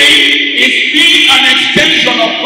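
A choir of voices singing loudly together.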